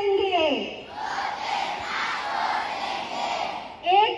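A large crowd of schoolchildren recites a line of a Hindi poem in unison, repeating it after the leader. Their many voices blend into one dense wash that lasts about three seconds. Just before, a woman's voice ends a line, falling in pitch, and she starts speaking again at the very end.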